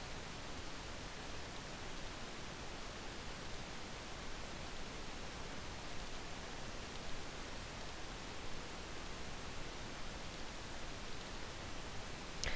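Steady, faint hiss of the recording's background noise, with no other distinct sound.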